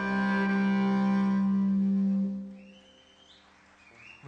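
A folk tune ending on a long held low note with its overtones, which stops a little over two seconds in, followed by near quiet.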